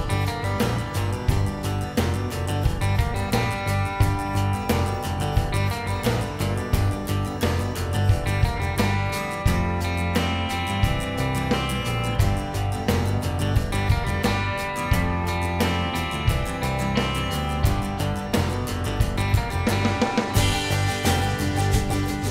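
Background music: an upbeat acoustic guitar track with a steady strummed beat.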